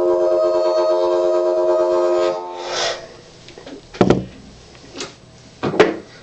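Blues harmonica played through a vintage Shure brown bullet harp mic with a CR element, holding one chord for about two and a half seconds before it dies away. Two sharp thumps follow, about four seconds in and again near the end.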